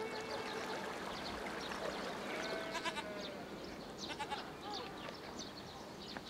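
Rural farmyard ambience: livestock bleating faintly, with a brief call about two seconds in, over repeated short high chirps.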